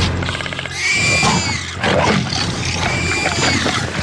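Film sound effects of a large dinosaur roaring. Two high-pitched roars slide in pitch, one about a second in and another near the end, with rough growling between them, over a steady low musical drone.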